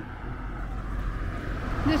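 A vehicle approaching on the road, its rushing tyre and engine noise growing steadily louder.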